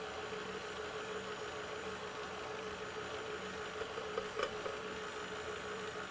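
KitchenAid stand mixer's motor running with a steady hum as it mixes batter. A faint click about four and a half seconds in.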